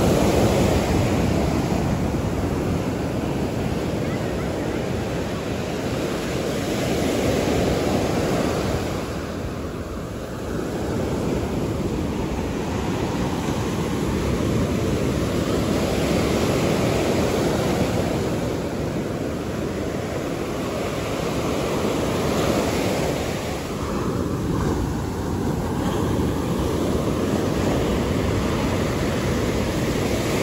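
Ocean surf breaking and washing up a sandy beach, a steady rush that swells and eases every several seconds as each wave comes in and draws back.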